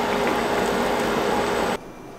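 Steady bubbling hiss of bak kut teh broth simmering in a claypot, cutting off abruptly near the end.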